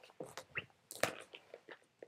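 Irregular clicks, crunches and rustling of plastic air hoses being pushed into the ports of an airway-clearance vest, with the sharpest click about a second in.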